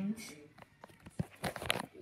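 Rustling, crinkling and knocking from plush toys being handled close to the microphone, building to a cluster of sharp clicks near the end.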